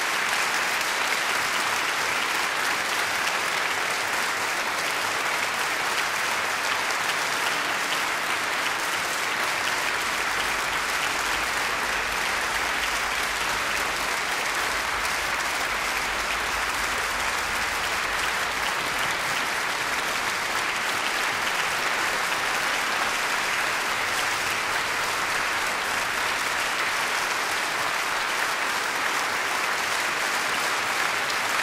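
Large concert-hall audience applauding steadily, a dense, even clapping that carries on without letting up.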